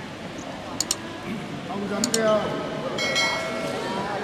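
People shouting amid the sounds of a wrestling bout, with two pairs of sharp clicks in the first half and a long held call near the end.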